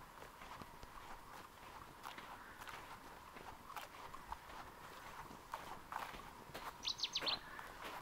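Faint, quiet ambience with scattered soft ticks and rustles, and a short bird call of four quick high chirps near the end.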